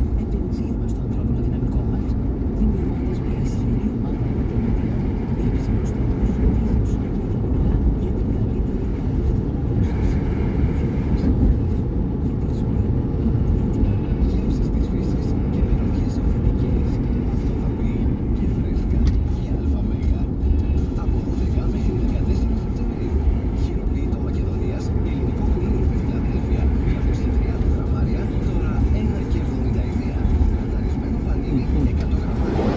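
Steady low road and engine rumble inside the cabin of a moving car, with a Greek-language car radio playing faint talk and music underneath.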